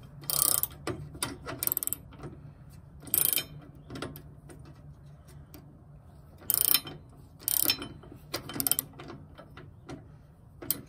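Ratchet wrench clicking in short bursts at uneven intervals as a bolt on a steel hitch bracket is tightened.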